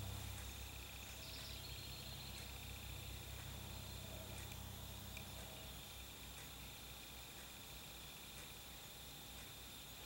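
Faint birds chirping outdoors, heard through an open window over quiet room tone with a low hum and a steady faint high tone.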